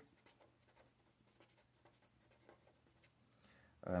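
Berol fine-tip felt pen drawing short lines on paper: faint, scattered scratchy strokes.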